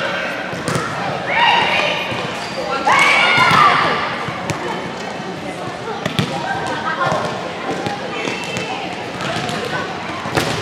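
Gym noise: girls' voices calling out, with scattered sharp thuds of volleyballs bouncing on the hardwood floor, most of them in the second half.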